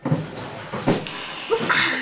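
Whipped cream spraying from an aerosol can: a sudden hissing rush broken by a few sharp spurts.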